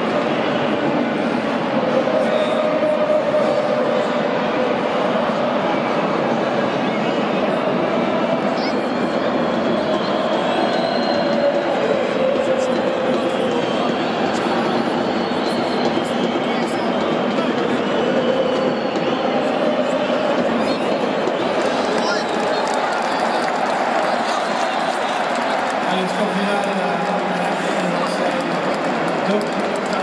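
Football stadium crowd chanting and singing, a continuous loud mass of many voices.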